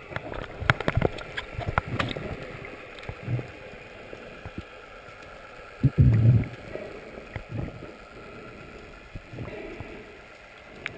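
Water sloshing and splashing against an underwater camera near the surface, with crackling clicks early on and muffled low thumps. The loudest thump comes about six seconds in, along with a muffled voice.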